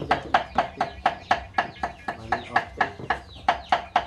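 A chicken clucking in a rapid, even series, about four clucks a second.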